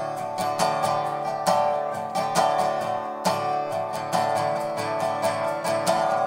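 Resonator guitar strummed in a steady rhythm, an instrumental break between sung verses of a country song.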